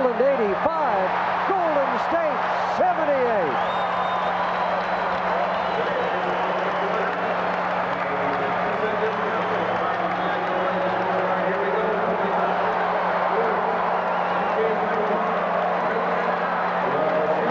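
Large arena crowd cheering and roaring after a buzzer-beater, with loud individual shouts in the first few seconds settling into a steady roar.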